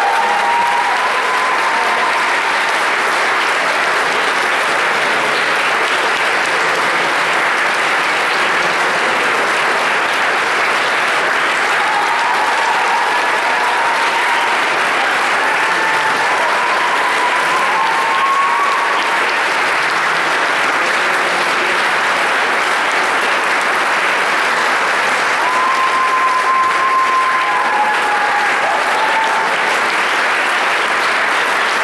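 Audience applauding: dense, steady clapping that holds at an even level throughout.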